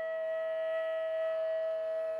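Flute holding one long note over a steady drone of lower tones.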